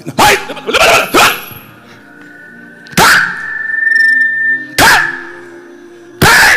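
Loud, short amplified shouts, about five sharp wordless yells, over soft background music. Between about two and five seconds a steady high ringing tone grows louder, then cuts off suddenly.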